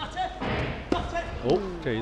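A taekwondo kick landing with a sharp thud, then a crowd in a large hall cheering and shouting as a head kick scores.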